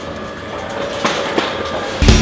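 Wheels rolling and rattling across a concrete floor, with a couple of sharp knocks about a second in and again later.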